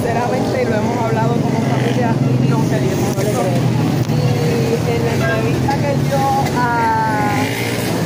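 People talking, words unclear, over the steady low hum of a motor vehicle engine running, strongest in the first half.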